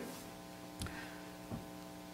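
Steady electrical hum, mains hum picked up through the church's microphone and sound system, with two faint short sounds about a second and a second and a half in.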